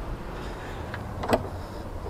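Low background rumble, broken by a single light click a little over a second in.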